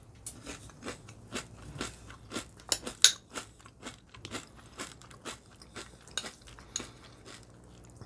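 Crisp protein muesli of extruded rice crisps and clusters being chewed and scooped with a spoon through a bowl of milk: a string of small, irregular crunches and clicks, the sharpest about three seconds in.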